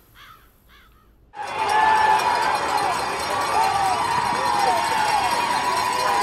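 Faint voices for about a second, then a large crowd cheering and yelling cuts in suddenly and runs on loudly and steadily.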